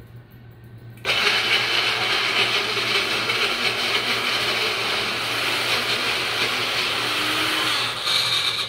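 Baby Bullet blender motor starting about a second in and running steadily, blending a whole avocado with a quarter cup of water into puree.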